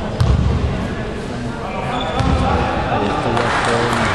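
A basketball bouncing on a hardwood court, a sharp thud just after the start, over the steady talk of spectators in a sports hall; the crowd noise swells near the end.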